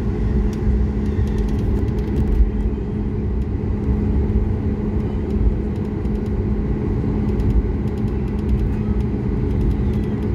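Airliner cabin noise while taxiing: a steady low rumble of the jet engines at taxi power and the wheels rolling over the taxiway, with a steady low hum running through it.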